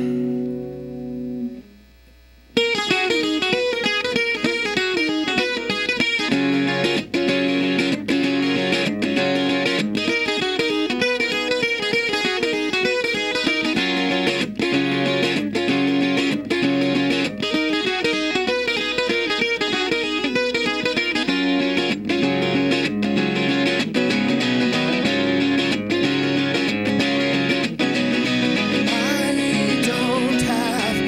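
Acoustic guitar: one chord rings out and dies away, then after a short pause about two and a half seconds in, a steady, busy run of quickly picked notes and chords begins: the instrumental introduction to a song.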